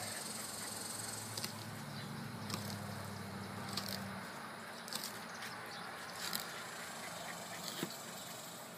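Faint, short scratches and ticks of a fillet knife slicing meat off a small alligator gar's backbone and scaly skin, over an outdoor background with a low hum that stops about four seconds in.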